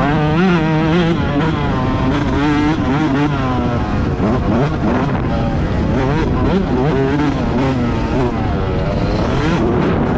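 Yamaha YZ125 two-stroke single-cylinder engine being ridden hard, its pitch swinging up and down as the throttle is worked, dropping about a second in and climbing again in the middle and near the end.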